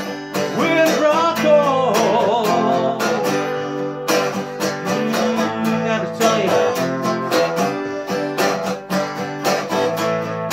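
Acoustic guitar strummed in a steady rhythm through an instrumental passage of a song. A wavering melody line that bends in pitch rises over the chords about a second in and again around six seconds in.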